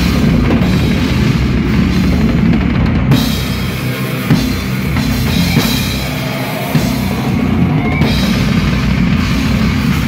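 Death metal band playing live at full volume, heard close to the drum kit: dense drumming with bass drum and cymbals leading the mix. The low end thins out briefly twice, about four and about six and a half seconds in.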